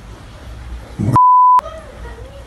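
A censor bleep: one steady high beep about half a second long, starting a little after a second in, masking a swear word, with all other sound cut out while it plays.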